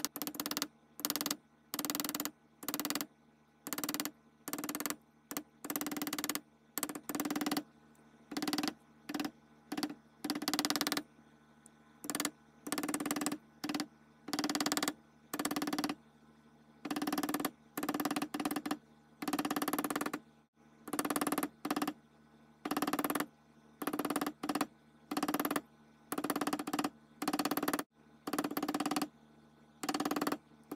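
A hammer tapping on steel at a replica bolo bayonet's hilt clamped in a bench vise. The blows come in short bursts of quick taps, about one or two bursts a second, with a ring carried through the metal.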